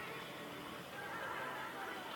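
Yak-55's nine-cylinder M-14P radial engine and propeller, heard at a distance, its pitch wavering up and down as the aircraft climbs vertically and rolls over at the top.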